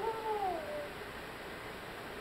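A toddler's high voice making one drawn-out 'moo' in answer to a cow picture, with the pitch falling away at the end.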